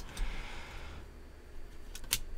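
Faint soft rustle of baseball trading cards sliding against one another as they are flipped through by hand, fading after about a second.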